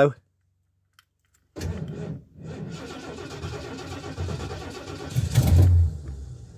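A Ford V8 petrol engine in an American motorhome cranking on its starter after weeks of standing. There is a short first crank, then about three seconds of steady cranking, and the engine nearly catches in a louder burst near the end before dying away without starting.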